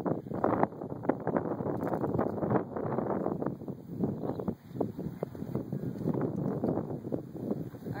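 Wind buffeting the microphone in uneven gusts.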